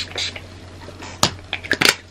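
A pump spray bottle, likely makeup setting spray, spritzed at the face: the last two short hisses of a quick run of sprays at the start. Then come a few sharp clicks and taps of handling the bottle, the loudest near the end.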